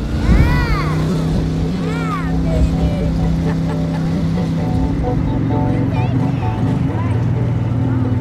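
A woman whoops twice in the first two seconds, each shout rising and falling in pitch, over the rumble of an open vehicle in motion. A music score of steady held notes then takes over.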